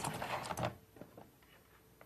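A few light clicks and rustles of PC parts being handled as the motherboard is lifted, mostly in the first half-second or so, then a couple of faint ticks.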